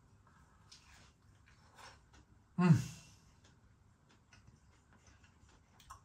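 A person chewing a crispy-battered chilli cheese nugget, with faint small crunches, and one appreciative falling "mm" about two and a half seconds in.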